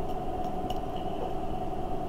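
Steady background hum with a faint, even whine running through it.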